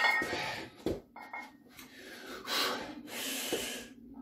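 A man breathing hard, three long, heavy breaths, while winded from grip and strength training. A short knock comes about a second in.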